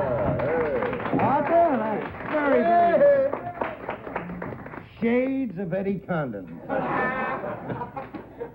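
Men's voices laughing and exclaiming in reaction, with a man clapping his hands during the first few seconds.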